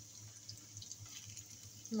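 Faint sizzling of chopped garlic, cumin seeds and dried red chillies frying in hot oil in a pan, with a few soft crackles as the tempering is stirred.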